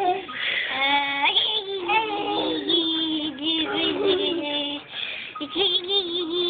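A voice singing a sing-song tune: a run of sung notes, several held for about a second, with an upward slide about a second in.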